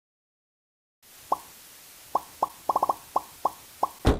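A string of about ten short, pitched cartoon pop sound effects, starting about a second in and irregularly spaced, with a quick run of four close together in the middle.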